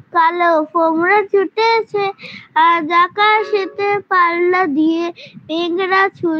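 A child singing a song in short phrases with held notes.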